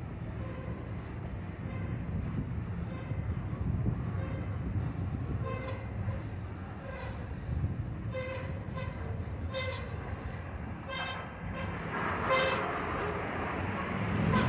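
Freight cars rolling slowly past during switching: a steady low rumble of wheels on rail, with short high squeals repeating from the wheels and a louder, harsher burst near the end.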